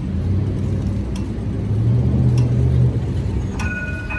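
City street traffic at a tram intersection: a low vehicle engine rumble that swells for about a second past the middle, with a regular tick roughly every second of a pedestrian crossing signal. Near the end a short high two-note ring sounds twice.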